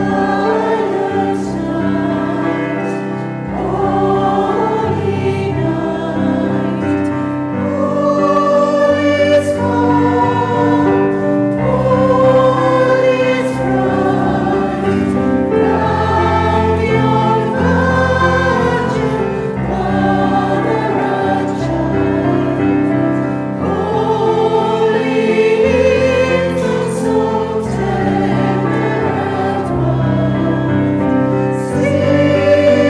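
Mixed choir of men's and women's voices singing a carol in close harmony, with a slow, sustained melody.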